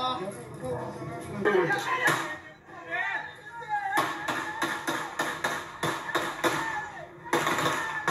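Gunfire from a shootout during a police raid: a rapid string of about a dozen sharp shots, about three a second, starting about four seconds in, with a louder burst near the end. Heard through a television's speaker.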